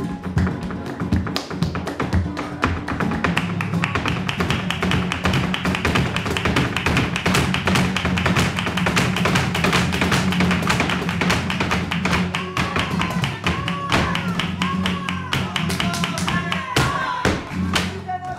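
Flamenco alegría: fast heeled-shoe footwork (zapateado) drumming on the stage, with palmas hand clapping and flamenco guitar underneath. Short vocal calls come in during the second half.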